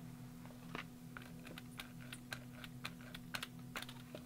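Faint, irregular light clicks and ticks of a rubber brayer being handled and rolled over a textured journal cover, over a low steady hum.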